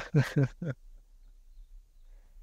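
A man's voice trailing off in a few short, evenly spaced bursts of laughter, then only a faint, quiet outdoor background.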